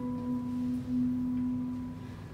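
A woman's voice holding one long, soft hummed note, wordless and close to a pure tone, with live piano accompaniment.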